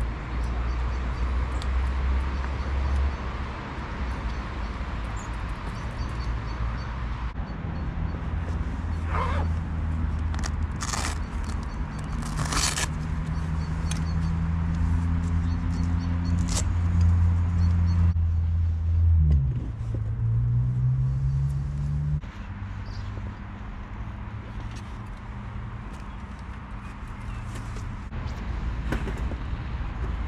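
Low, steady engine hum of nearby road traffic that shifts in pitch a few times, with a brief upward glide. A few sharp clicks and knocks of handling about a third of the way in.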